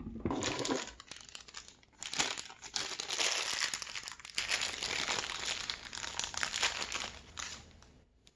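Small clear plastic hardware bag crinkling as it is handled and opened, with a short lull about a second in.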